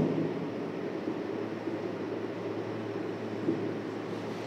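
Quiet room noise with a steady low hum and the faint scratching of a marker writing on a whiteboard.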